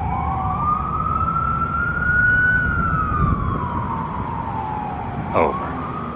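A siren wailing slowly: its pitch rises for about two and a half seconds, falls for about as long, and starts to rise again near the end, over a low traffic rumble. A brief sound cuts in near the end.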